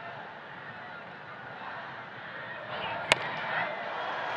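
Baseball stadium crowd, a steady mix of voices and shouts that grows louder, with a single sharp crack about three seconds in as the pitch that brings the count full is struck or caught.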